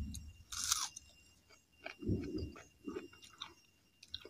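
A person chewing a mouthful of food close to the microphone, with many faint wet mouth clicks. A short loud hiss about half a second in is the loudest sound, and heavier chews follow about two and three seconds in.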